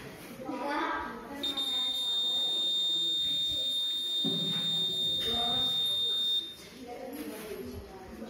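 Piezo buzzer on an Arduino smart dustbin sounding one steady high-pitched tone for about five seconds, starting about a second and a half in and cutting off suddenly: the alarm that the ultrasonic sensor has found the bin full, shown with its red light. Voices talk quietly underneath.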